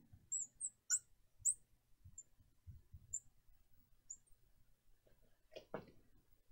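Marker tip squeaking faintly on a glass lightboard while writing: about six short, high squeaks, spaced out over the first four seconds. A brief soft noise near the end.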